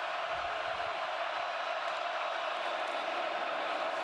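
Steady noise of a large stadium crowd at a football game, an even wash of many voices.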